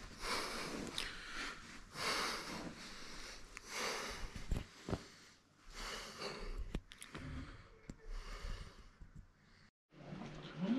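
A man breathing slowly and deeply close to the microphone, about one breath every two seconds, as in meditation. There are a few faint clicks, and the sound drops out briefly near the end.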